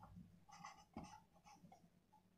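Faint marker-pen strokes on a whiteboard as a word is handwritten: a few short, soft scratches.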